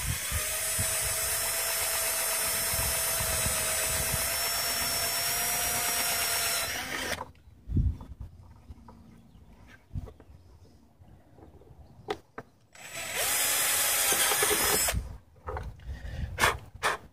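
Cordless drill with a quarter-inch bit boring holes through a plastic air intake duct. It runs steadily for about seven seconds, then again for about two seconds near the end, with a few short knocks in the pause between.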